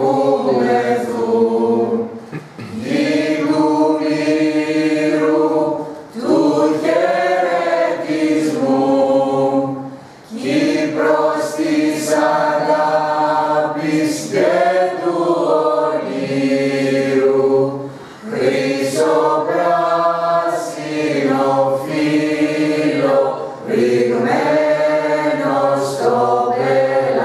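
Small mixed choir of men and women singing together unaccompanied, in sung phrases of a few seconds broken by short breath pauses.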